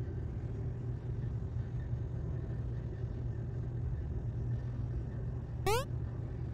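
Steady low background hum. About five and a half seconds in, one short, sharp rising squeal cuts through it and is the loudest sound.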